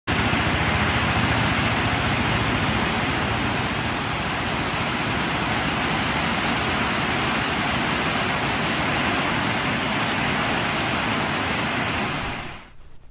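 Heavy tropical rain pouring down on wet ground, a steady, dense hiss of drops with no letup.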